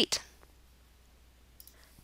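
The tail of a spoken word, then near silence broken by two or three faint short clicks shortly before the next sentence.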